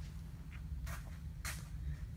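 Low steady hum with a few soft, brief scuffs about half a second apart: footsteps of someone walking across a concrete shop floor.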